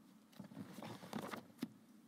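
Paper rustling as pages are handled, a second or so of crackly rustles, followed by one sharp tap.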